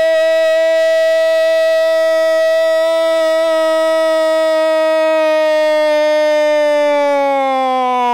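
A football commentator's long, unbroken held shout, steady in pitch for about eight seconds and sagging slightly near the end before running on into fast commentary.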